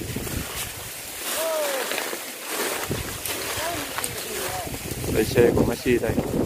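Wind buffeting the microphone in an open field, with people's voices calling out now and then. The voices get louder and closer about five seconds in.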